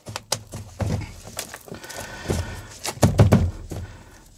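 Moist potting soil being scooped by hand into a small plastic pot, with rustling and scattered knocks and thunks from the pot being handled. The loudest knocks come about three seconds in.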